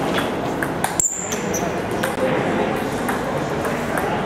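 Table tennis rally: the ball clicking off the rackets and table in turn, with a sharp high ping about a second in, over a steady murmur of voices.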